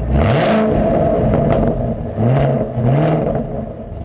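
Car engine revving: a rev at the start, then two quick rising revs a little past two seconds and just before three, fading away near the end.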